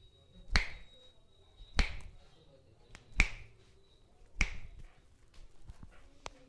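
Four sharp snaps about a second and a quarter apart, as a masseur pulls a customer's fingers one after another in a hand massage.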